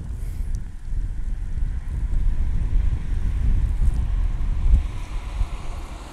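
Wind buffeting the camera microphone in gusts: an uneven low rumble that rises and falls, strongest a little before the end.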